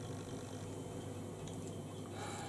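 Quiet room tone: a steady low electrical hum under faint hiss, with a couple of faint soft ticks about a second and a half in.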